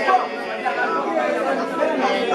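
A group of children and young people praying aloud all at once, many voices overlapping and calling out together.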